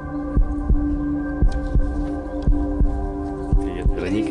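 Television show background music: a sustained synthesizer chord over a steady, low, heartbeat-like pulse of about three beats a second.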